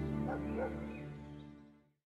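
A held music chord fading out, with a dog giving two short barks about a third and two-thirds of a second in.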